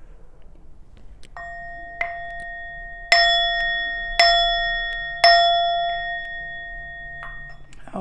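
A metal chime struck several times about a second apart, each strike renewing a long ring of a few clear tones; the three middle strikes are the loudest. The ringing is stopped just before the end.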